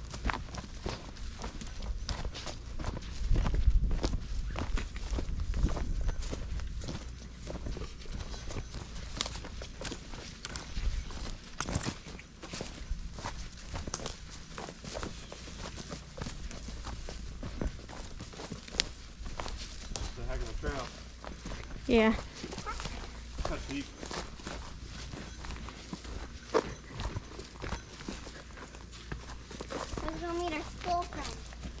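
Footsteps of people walking along a grassy forest trail, an irregular run of soft steps throughout, with a low rumble for a few seconds near the start.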